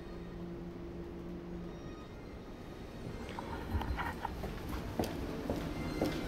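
A low steady hum, then from about three seconds in irregular footsteps and knocks on a hard floor.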